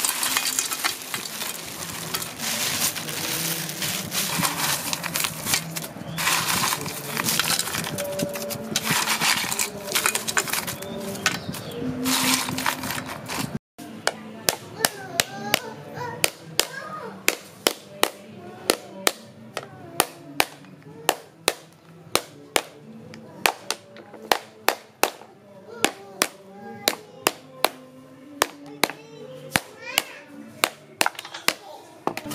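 Crushed ice poured from a plastic bag into a steel pot over wood apples, a dense crackling and clinking of ice, for about the first half. Then the hard shell of a wood apple struck over and over with a hand tool, sharp knocks about two a second as the shell cracks and breaks away.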